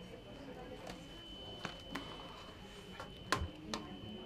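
Quiet office room tone with a faint steady high whine and a few sharp, scattered clicks, the loudest a little after three seconds in.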